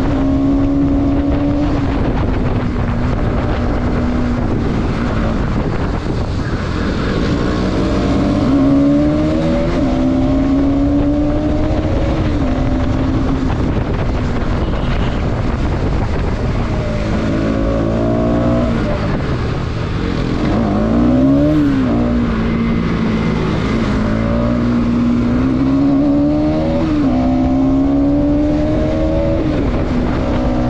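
Motorcycle engine under way, its pitch climbing through each gear and dropping back at the shifts, with wind rushing over the microphone. About twenty seconds in the engine note dips and then climbs sharply.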